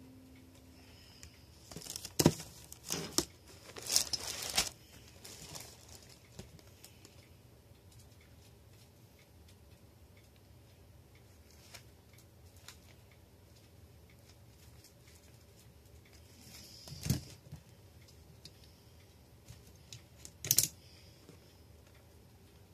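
Sheet music and a folder being handled on a music stand: a cluster of paper rustles and light knocks a couple of seconds in, then two more brief rustles with knocks near the end, in a quiet small room. A last ukulele note dies away in the first second.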